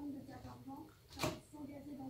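A fork scraping once on a plate of salad about a second in. Under it runs a faint, steady hum with a slightly wavering pitch.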